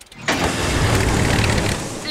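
Cartoon sound effect of a small motor boat's engine running hard in reverse, trying to back out of reeds it is stuck in. It starts about a quarter of a second in and holds steady.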